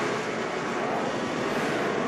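NASCAR race trucks' engines running on track, heard as a steady, even drone through the TV broadcast audio.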